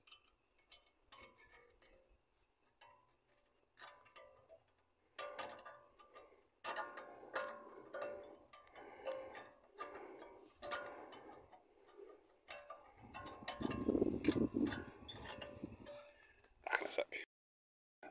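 Light metallic clicks and taps from a wire retaining spring being worked into place on a SEAT Leon rear brake caliper, with a denser, louder scraping rattle about thirteen seconds in as the spring is pressed home.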